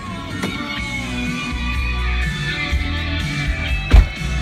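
Music with guitar and heavy low bass playing from an aftermarket Kenwood car stereo, with a single sharp thump just before the end.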